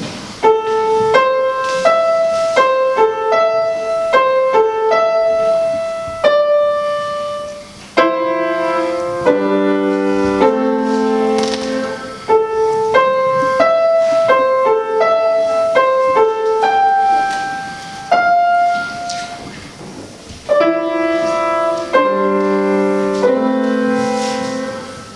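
Solo grand piano playing a little prelude: a melody in single notes, with fuller low chords joining in during the middle and near the end. The phrases ease off about eight and about twenty seconds in.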